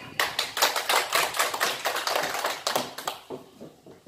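A small audience clapping: a brisk patter of many hand claps that dies away about three seconds in.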